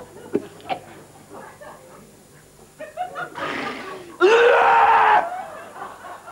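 A man's wordless comic vocal noises: a few small mouth clicks, then, a little past halfway, a rasping wheezy breath that runs straight into a loud, strained cry about a second long before dying away.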